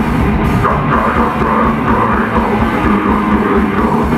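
Heavy metal band playing live: distorted electric guitars over a loud, dense drum kit.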